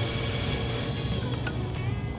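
Electric pottery wheel running steadily with a constant low motor hum.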